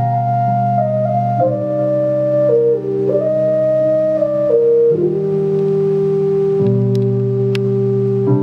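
Nord Electro stage keyboard played with an organ-like sustained sound: a melody steps down over held chords and settles on one long note about five seconds in, as the chord beneath it changes.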